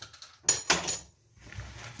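Hands kneading and mashing soft raw kebab mince in a plastic bowl, with two quick handling noises about half a second in.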